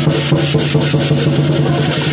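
Southern lion-dance percussion: a big drum struck with crashing cymbals and gong in a fast, steady beat, several strokes a second.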